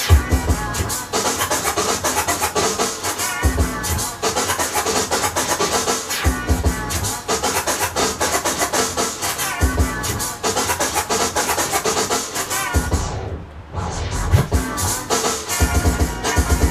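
A DJ scratching a record on a turntable over a beat, with heavy bass hits coming back about every three seconds. About thirteen seconds in the sound briefly thins and dips before the beat returns.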